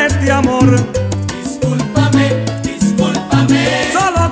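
Salsa romántica recording playing: the band carries on between sung lines over a bass line that steps from note to note, with a sung note ending just as it begins.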